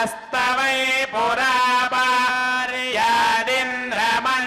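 Male priests chanting Vedic Sanskrit mantras together, holding long recited notes with a short break for breath near the start. A steady low tone holds beneath the chant.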